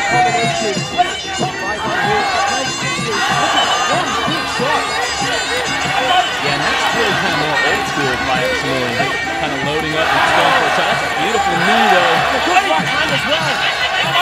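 Sarama, the traditional Muay Thai ring music, with the reedy pi oboe carrying a winding melody, over crowd noise and voices. The crowd grows louder about ten seconds in.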